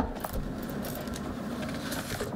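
Handling noise as a person sits down at a table with a microphone: a knock at the start, then a few light clicks and rustles, over a steady low room hum.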